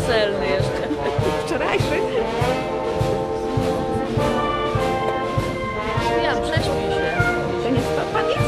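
Wind band of brass and woodwinds playing with a steady beat of about two strokes a second, held brass chords under sliding notes.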